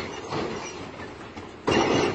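Lowrider car's hydraulic suspension working in short, sudden bursts as the car is raised up onto its rear wheels, a louder burst near the end.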